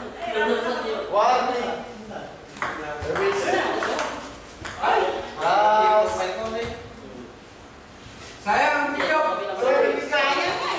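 Table tennis ball clicking off the paddles and table during a rally, with people's voices talking and calling out around it.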